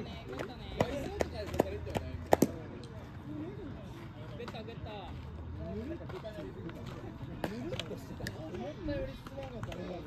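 Players calling and shouting across a baseball field, with many voices overlapping. About one to two and a half seconds in there is a run of sharp claps, about one every half second.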